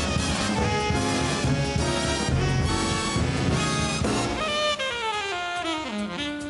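Swing big band playing full out, trumpets, trombones and saxophones together over bass and drums. About four seconds in the ensemble thins and an alto saxophone solo begins with a falling run.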